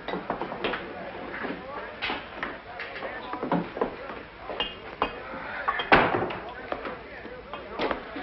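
Tavern background: scattered knocks and clinks of glasses and crockery over a faint murmur of voices. The sharpest knock comes about six seconds in.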